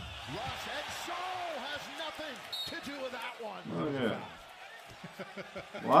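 Audio of a televised NBA game, fairly quiet: a commentator talking over arena crowd noise, with a basketball being dribbled on the court.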